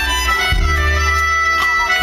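Live band playing: a soprano saxophone holds long, steady melody notes over electric bass and drums.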